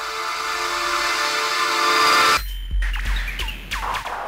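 Electronic logo intro sting: a sustained synth chord swells louder, then cuts off abruptly about two and a half seconds in. A deep bass hit follows, with short falling electronic zaps and clicks.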